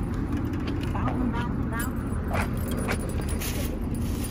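Metal shopping cart rolling over parking-lot asphalt, a steady low rumble, with a jangle of keys as it comes up to the car.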